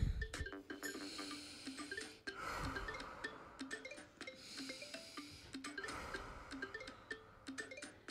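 Soft background music, a simple melody of short notes, runs under two deep breaths: one about two seconds in and another about six seconds in.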